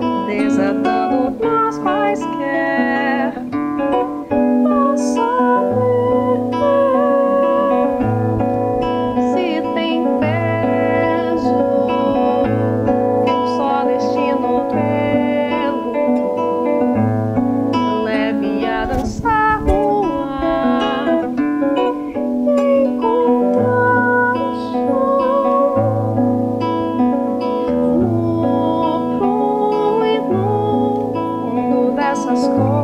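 A woman singing a slow song in Portuguese to her own classical guitar, fingerpicked, with a low bass note coming back about every two seconds.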